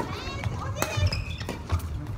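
Badminton rally in a large hall: a sharp racket hit on the shuttlecock a little under a second in, over voices calling around the hall.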